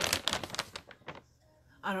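A rapid run of clicks and knocks from objects being handled, which stops about a second in; after a short pause a woman starts speaking near the end.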